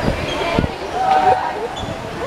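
Girls' voices chattering in a sports hall, with three dull thuds of a volleyball bouncing on the court floor in the first second.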